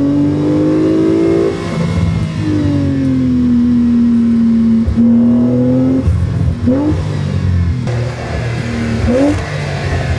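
2022 Porsche 911 Carrera 4 GTS Targa's twin-turbocharged 3.0-litre flat-six under way: the engine note climbs in pitch over the first second and a half, then drops and holds steady. Two quick upward revs follow in the second half.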